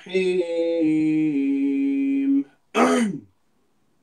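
A man's voice chanting Quranic recitation in Arabic in a slow, melodic style, holding long steady notes for over two seconds, then a short falling phrase around the third second.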